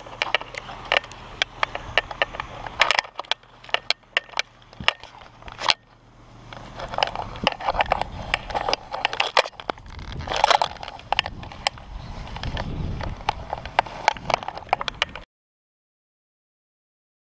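Footsteps and handling noise close to a body-worn action camera: many sharp clicks and knocks with short rustling bursts as a person walks onto a dock and crouches at its edge. The sound cuts off suddenly near the end.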